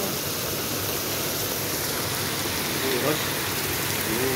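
Heavy rain pouring onto a paved street and parked cars: a loud, steady, even hiss of water. A woman's voice says one word about three seconds in.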